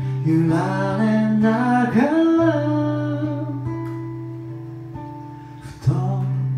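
Acoustic guitar strumming chords under a man singing a held line, then a chord left to ring and fade away for about three seconds before a fresh strum near the end.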